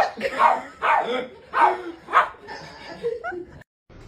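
A dog barking repeatedly, about two barks a second.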